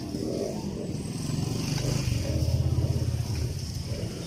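A small engine running with a low, rapidly pulsing rumble that grows louder after about a second and a half, then eases near the end.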